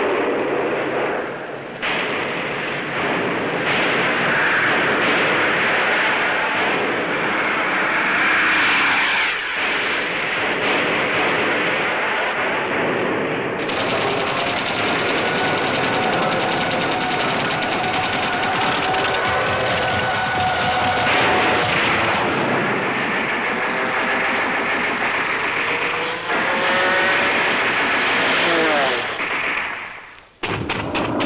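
World War II battle sound: aircraft engines running under continuous rapid anti-aircraft gunfire. Near the end an aircraft's engine note slides in pitch as it passes.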